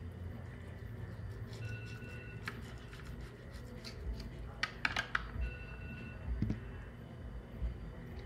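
Kitchen knife slicing through a nori-wrapped kimbap roll on a plastic cutting board, with a quick cluster of light clicks and taps about four and a half seconds in as the blade cuts through and meets the board, over a steady low hum.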